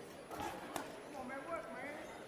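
Two sharp smacks of gloved punches landing in a boxing ring, under faint shouting voices from ringside.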